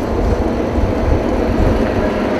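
Road traffic on a busy highway: buses and cars passing close by in a loud, steady rumble.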